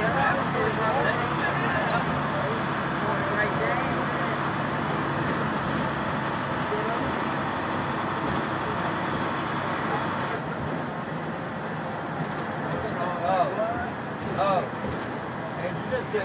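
Cabin sound of a 2006 IC CE school bus's DT466 inline-six turbo diesel running under way, a steady engine drone mixed with road noise. About ten seconds in, the higher hiss drops away and the engine runs on more quietly.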